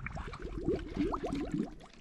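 Seawater gurgling and bubbling in a landing net held in the water, a jewfish moving inside it as it is revived for release; many quick little bubbly chirps.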